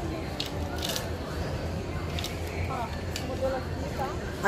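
Wooden clothes hangers clicking and sliding along a metal clothes rail as garments are pushed aside: a few short, sharp clicks, over steady background noise with faint voices.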